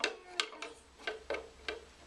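A handful of light, sharp clicks and taps, about six spread over two seconds.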